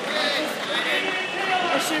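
Several people talking at once in a large hall: overlapping spectator chatter with no single clear speaker.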